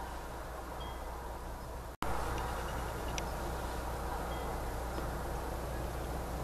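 Steady background hum and hiss with a few faint, short, high tinkles like small chimes. The sound cuts out completely for an instant about two seconds in.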